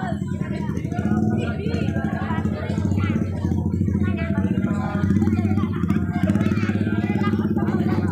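A small engine running steadily with a fast low pulse, under people's voices.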